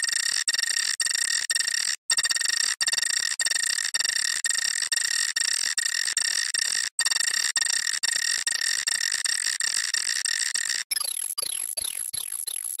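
The Nokia startup sound effect, sped up and heavily distorted into a harsh, high-pitched buzz made of several stacked tones that stutter rapidly. It drops out briefly about two seconds in and again around seven seconds. Near the end it turns into a quick run of falling chirps.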